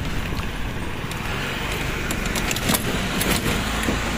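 Steady rumble and road noise of a moving vehicle heard from its passenger seat, with a short run of rattling clicks about two and a half to three and a half seconds in.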